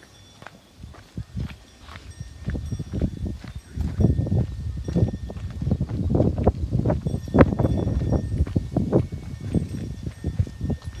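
Footsteps walking on a dirt path, an irregular run of soft steps and scuffs that gets louder and denser about four seconds in.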